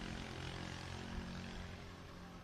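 A steady, low engine hum, fading slightly near the end, over faint street noise.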